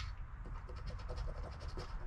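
Coin scraping the coating off a scratch-off lottery ticket, a quick run of short scrapes.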